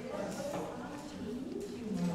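Low, indistinct talking from people in the room, with no clear words.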